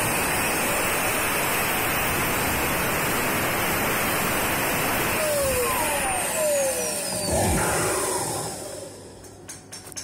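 Turbocharger core spinning at high speed on a balancing rig, giving a loud, steady rush of air. About six seconds in, its whine falls in pitch as the rotor spins down, and the sound fades away near the end with a few light clicks.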